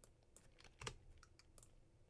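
Faint clicking of computer keyboard keys: about half a dozen short keystrokes, the loudest a little under a second in, as characters of code are deleted.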